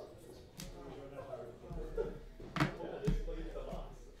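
Low talking with sharp knocks on a tabletop, a faint one early and two loud ones about half a second apart near the end.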